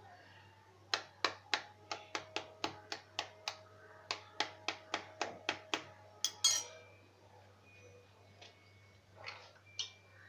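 A metal spoon clinking against a stainless steel tumbler in quick strokes, three to four a second, with a brief ringing, as eggs are beaten inside it. A louder clatter comes after the strokes stop, then a couple of soft knocks near the end.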